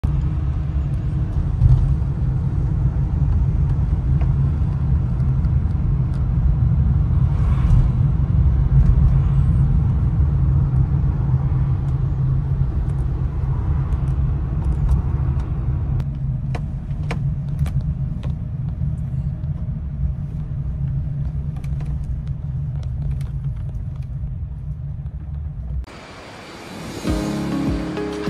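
Steady low rumble of a moving vehicle, with a few light clicks and taps in the second half.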